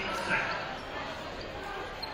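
A basketball bounced on the hardwood gym floor, with a sharp bounce about a third of a second in, over a murmur of crowd voices in the gym.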